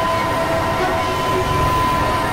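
Experimental electronic synthesizer drone: a steady high tone held over a dense, noisy rumble, with shorter tones coming and going beneath it.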